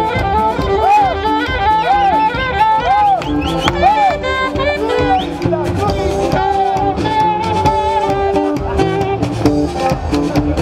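Live band music played loud from a parade float, with a steady beat. Through the first half a rising-and-falling tone repeats about once a second; after that a longer held melody line takes over.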